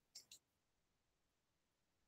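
Near silence, broken just after the start by two quick, faint clicks in close succession.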